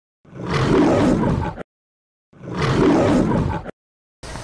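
A roar sound effect played twice: two matching bursts of about a second and a half each, separated by dead silence, each cut off sharply.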